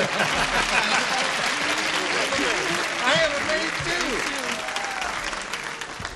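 Audience applauding and laughing, the applause dying away near the end.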